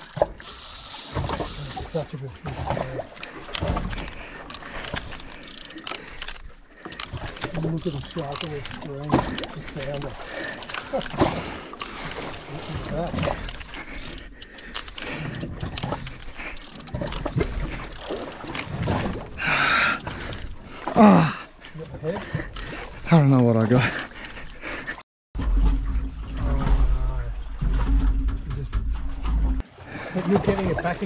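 Indistinct voices over wind and water noise, with two drawn-out sweeping cries around two-thirds of the way in. After a sudden cut, a steady low hum runs on to the end.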